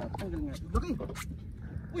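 Faint men's voices with short rising and falling calls, and a few sharp clicks.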